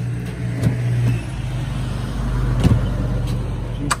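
Steady low mechanical hum, like an idling motor, with a few light knocks, the sharpest near the end.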